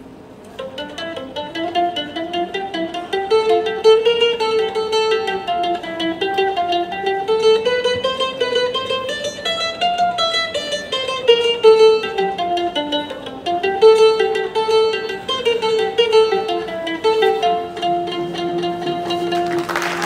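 An ensemble of plucked ouds and mandolins playing a melody together, the line climbing and falling in quick notes. It starts softly and swells over the first couple of seconds, and a short noisy burst comes right at the end.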